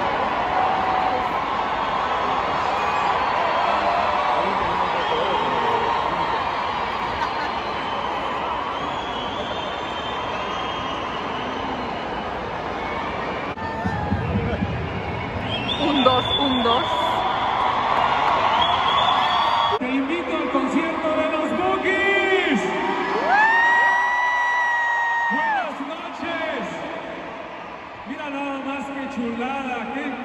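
Large stadium crowd waiting for a late-starting concert: a dense wash of chatter and voices, with whoops and cheers standing out from about halfway through. Near the end long drawn-out yells rise and fall above the crowd.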